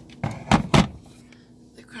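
A few short clunks, the loudest two a quarter second apart about halfway through, as a West Bend slow cooker's cooking pot is set down onto its heating griddle base.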